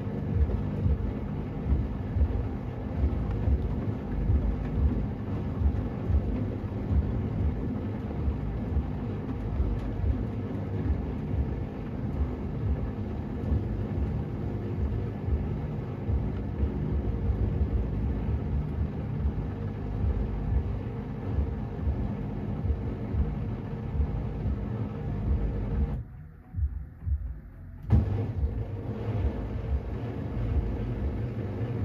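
Samsung front-loading washing machine drum rumbling and humming as it speeds up from tumbling the wet load into a spin, the clothes pressed to the drum wall by the end. About 26 seconds in the running drops away for two seconds, then there is a sharp knock and the rumble resumes.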